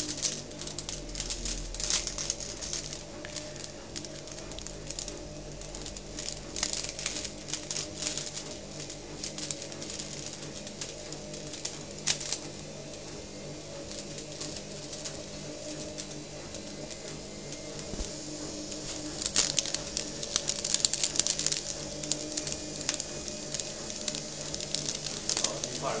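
Paper envelope crinkling and rustling as an African grey parrot handles and rolls it with its beak and foot, with a busier, louder stretch of crackling a little past the middle, over a steady background hum.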